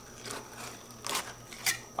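Fillet knife cutting through a carp fillet on a cleaning table: quiet slicing with two short, sharp strokes, one a little after a second in and one near the end.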